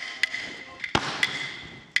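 Chinese opera percussion: about six sharp strikes with a ringing metallic tone carrying between them, the loudest a deep thud about a second in.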